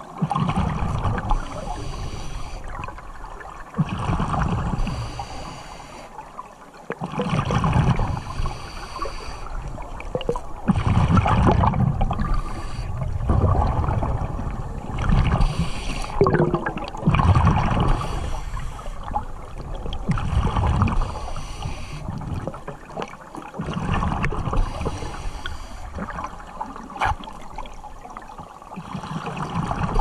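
Scuba regulator breathing heard underwater through the camera housing: bursts of exhaled bubbles recurring every few seconds, with quieter breaths between.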